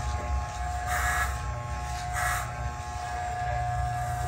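Corded Andis T-Outliner hair trimmer buzzing steadily as its blade is run back and forth over the stubble on a shaved head. It turns briefly hissier about a second and two seconds in.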